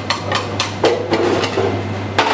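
A kitchen utensil knocking and scraping against a stainless-steel mixing bowl and a plastic tub as crème pâtissière is worked into the bowl, several sharp taps in a row, over a steady low hum.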